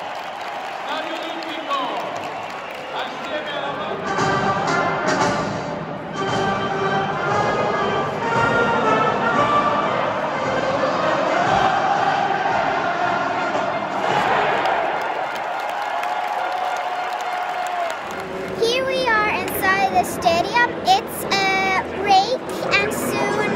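Stadium crowd singing along with a band playing an anthem during the pre-match line-up, under a haze of crowd noise. Near the end it gives way to a girl speaking close to the microphone.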